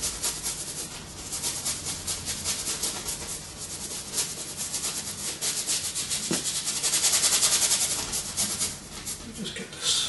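Paintbrush scrubbing oil paint onto canvas in quick, repeated strokes: a dry, scratchy hiss at several strokes a second that swells loudest past the middle.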